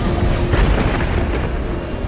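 A deep, steady rumble with a rushing wash of noise over it: churning sea water.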